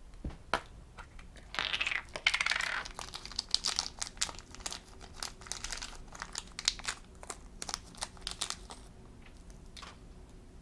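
Fingers opening a small plastic toy capsule and handling the tiny plastic charm inside. A crinkling rustle comes about one and a half to three seconds in, then many quick light clicks and taps of plastic.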